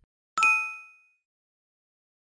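Notification-bell 'ding' sound effect: a single bright chime struck once, ringing out and fading away within about a second.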